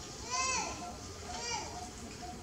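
A baby monkey crying: two short high-pitched calls about a second apart, each rising and then falling in pitch, the first louder.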